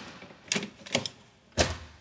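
Aluminium folding entry step of a travel trailer being rolled out to its second step, clacking three times as it unfolds and locks into place.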